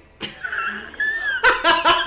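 A sudden squish sound effect from the TV episode's soundtrack, followed by a woman bursting into hard laughter in rapid pulses about a second and a half in, the loudest sound.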